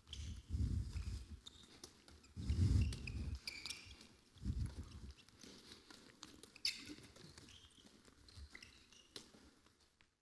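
Faint sounds of play on an indoor handball court: short high shoe squeaks on the sports floor and several dull low thuds, the loudest about two and a half seconds in, as players run and pass the ball.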